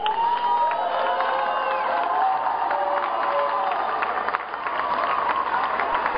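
Crowd cheering and shouting, many voices at once, with scattered claps.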